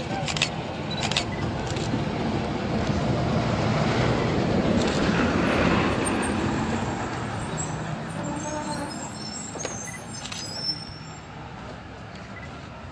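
A road vehicle passing by, growing louder toward the middle and then fading away, with a few light knocks near the start and near the end.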